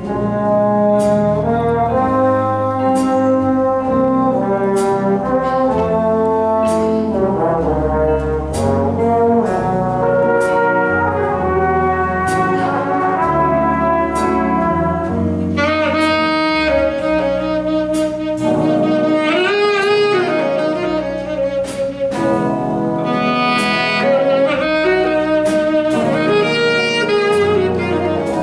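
A jazz big band of saxophones, trumpets and trombones plays over a rhythm section with piano and upright bass. From about halfway a tenor saxophone solos out front, its notes bending and sliding above the band.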